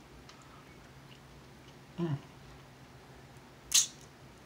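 Close-up eating sounds of a man working through crab legs: a few faint clicks, a short murmured "mm" of relish about halfway, and near the end a brief, sharp hiss, the loudest sound here.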